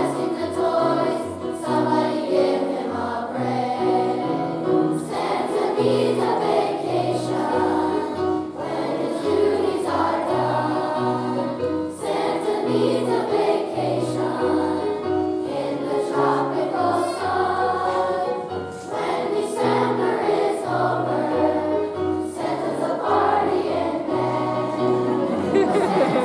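Children's choir singing a song together over an instrumental accompaniment with a steady, pulsing bass line.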